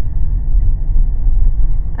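A loud, steady low rumble with no other sound on top, like road and engine noise heard inside a moving car.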